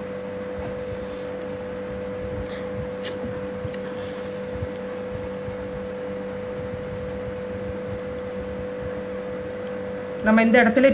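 Steady mechanical hum holding two constant tones, one lower and one higher, with a few faint ticks in the first few seconds.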